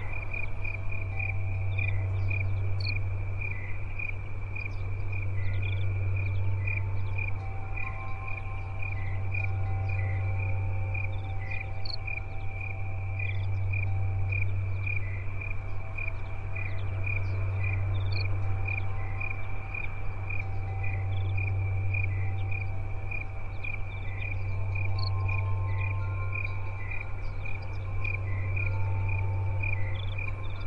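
Crickets chirping in a fast, even rhythm, over a loud deep hum that swells and fades every few seconds, with faint held ringing tones coming and going above it.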